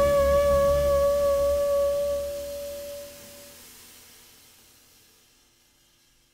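Jazz trio closing a piece: the saxophone holds a long final note over the double bass and drums, the low end stops about two to three seconds in, the held note ends soon after, and the sound dies away to silence.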